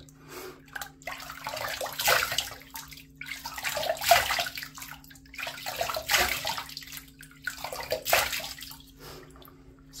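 Water splashed from cupped hands onto the face over a sink, rinsing after a shave, in four bursts about two seconds apart over a steady low hum.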